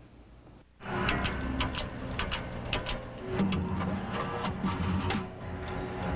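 Music comes in suddenly about a second in, after a near-quiet moment, with held notes and a run of sharp percussive clicks.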